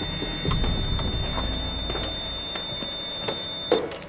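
Patient monitor sounding a steady high alarm tone that cuts off just before the end, over a low rumble and a few sharp clicks: the alarm for the patient's atrial fibrillation.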